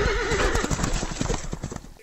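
A horse whinnying with a quavering, falling pitch, then a quick run of hoofbeats that fades out near the end.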